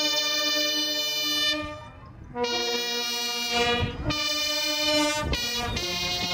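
Brass band playing slow, long-held chords, with a short break about two seconds in.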